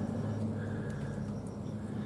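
A steady low hum in the background, unchanging, with no distinct event on top of it.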